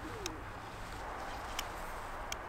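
Steel sewing needle clicking lightly against a small disc magnet on a knife sheath as it is stroked repeatedly in one direction to magnetise it: two clicks, the second louder. Just after the start, a short faint falling bird note.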